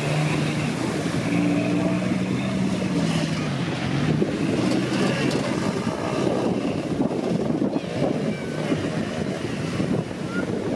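Jeep Wrangler engine running, its note steady for about three seconds, then dipping and giving way to a rough, noisy rumble.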